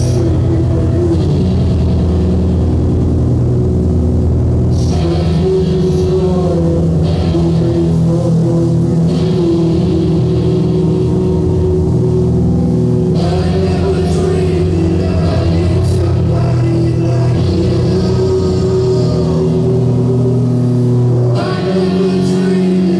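Live rock band playing through a PA, with sustained guitar and bass notes under drums.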